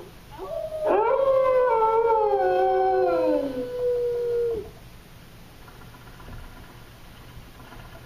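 Recorded dog howl for the show's animatronic dog, played over the theatre sound system: one long call of about four seconds, with one tone held while another slides down in pitch, cutting off suddenly about four and a half seconds in.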